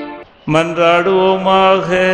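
A man's voice chanting a sung liturgical prayer on long held notes. The chant breaks off at the start, and a new phrase begins about half a second in.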